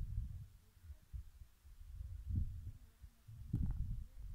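Wind buffeting the microphone: a low, uneven rumble that swells and drops in gusts.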